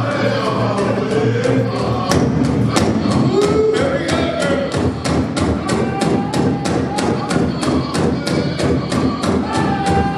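Powwow drum group singing a contest song, several voices together over a large drum struck in unison in a fast, even beat.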